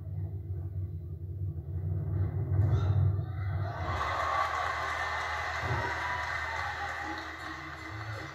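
Circus band music, then a circus audience applauding and cheering from about halfway, heard through a television's speaker.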